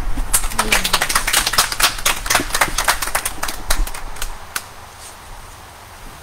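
Applause from a small group of people: sparse, irregular clapping that thins out and stops a little past four seconds in.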